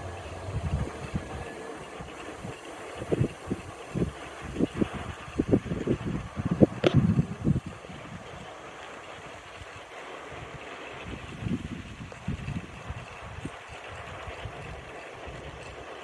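Gusty wind buffeting the microphone in irregular low thumps over a steady hiss, with a small homebuilt wind turbine (e-bike hub motor geared to fibreglass blades) turning in the breeze. One short sharp knock comes about seven seconds in.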